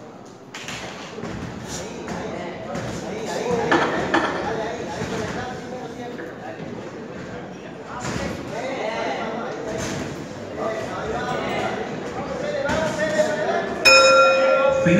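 Voices shouting at ringside during an amateur boxing bout, with a few sharp thuds of gloved punches landing. A bell rings right at the end, closing the round.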